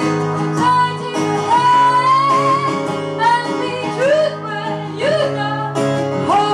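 A woman singing a slow melody with long, gliding held notes over guitar, in a live folk performance.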